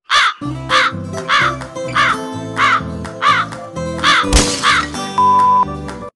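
Crow cawing sound effect, about eight caws evenly spaced a little over half a second apart, over background music with a repeating bass line.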